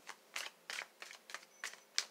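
Tarot cards being handled and shuffled: about half a dozen short, soft papery flicks spread through a quiet room.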